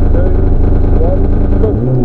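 Mitsubishi Lancer Evo's turbocharged four-cylinder rally engine running steadily inside the cabin at the stage start line, waiting for the launch, its note shifting near the end.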